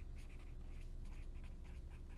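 Felt-tip marker writing on paper: a faint run of short, irregular scratching strokes as words are written out by hand.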